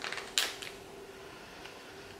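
A single short crinkle of a small plastic bag being handled, about half a second in, over a faint steady hum.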